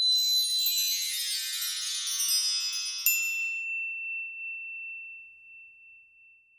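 Sparkling chime sound effect for a logo animation: a cascade of many bright, bell-like tinkles, then a single ding about three seconds in whose ringing tone slowly fades away.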